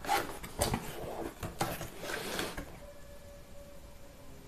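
Cardboard shipping box being opened by hand: a run of short rustles and scrapes of cardboard during the first two and a half seconds, then it goes quiet.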